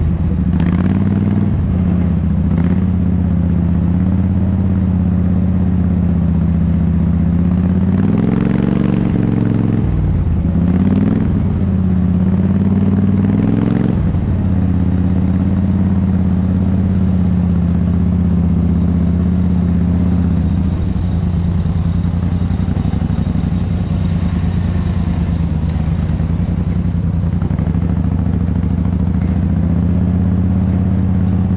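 Garden tractor engine running close by, rising in pitch as it revs up twice in the middle and then settling back to a steady run, with a few knocks near the start.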